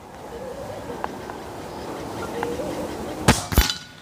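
A Reximex Throne V2 PCP air rifle fires once: a single sharp crack late on. About a third of a second later comes a second sharp smack as the pellet strikes the steel target plate 50 meters downrange.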